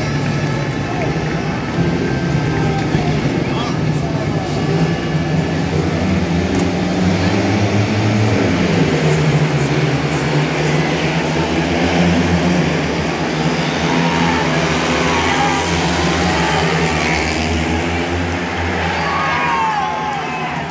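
Several speedway motorcycles' 500cc single-cylinder methanol engines, held at high revs at the start gate and then run at full throttle in a race, with the engine pitch rising and falling as they go round the track. Stadium crowd noise runs underneath.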